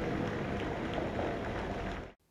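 Alvia passenger train passing on the track, a steady rushing noise that cuts off suddenly at the end.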